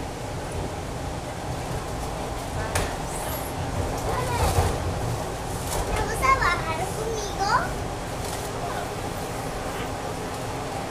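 TTC subway car running through the tunnel, a steady rumble and rattle throughout, with a young child's voice chattering briefly in the middle.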